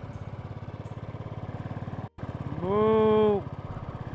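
Royal Enfield Bullet 350's single-cylinder engine running steadily under way, with an even, rapid beat. Past the middle, a loud held tone lasting under a second rises into pitch, holds and falls away over the engine.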